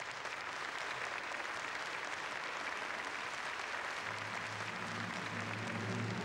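Theatre audience applauding, with the orchestra coming back in low about two-thirds of the way through.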